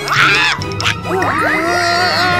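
A cartoon baby dinosaur character's wordless vocal sounds, with pitch gliding up and down, over background music.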